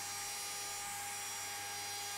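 Router turning a small roundover bit in a router table, a faint steady whirring hum with several steady tones, as the edge of a pine board is rounded over.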